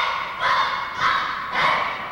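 A young taekwondo student shouting a quick series of short, loud calls about half a second apart, each on a held pitch, in a large hall.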